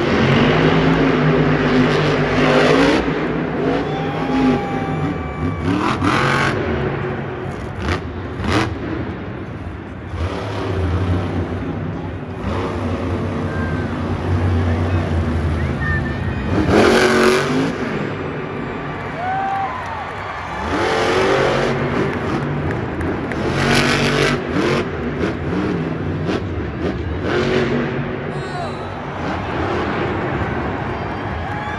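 Grave Digger monster truck's supercharged V8 running hard and revving, rising and falling in pitch as it attacks the ramps, with a few loud bangs and surges spread through.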